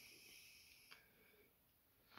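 Near silence, holding only a faint, high, steady whistle-like tone over the first second and a half and a tiny click about a second in.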